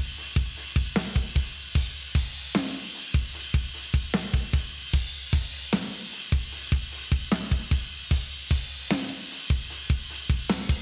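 Playback of a mixed, solo drum kit track in a chorus: fast runs of kick drum under regular snare hits and a constant wash of cymbals.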